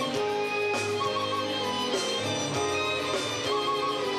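Instrumental music playing steadily, with no speech.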